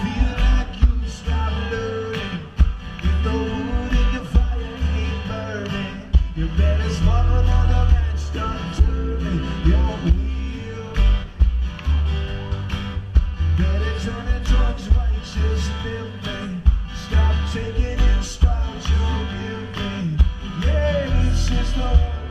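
Live band playing a song with a steady drum beat, heavy bass, guitar and a lead singer's voice, heard from within the audience.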